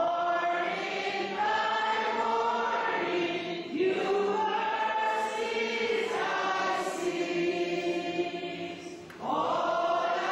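A congregation singing a slow hymn together in long, held notes, with brief breaks between phrases about four seconds in and again near the end.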